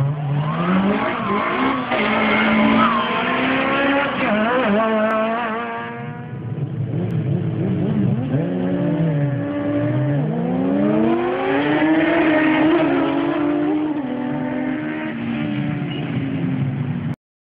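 Several car engines revving hard and accelerating, their notes climbing and falling in pitch over each other. The sound dips about six seconds in, then one engine climbs steadily again.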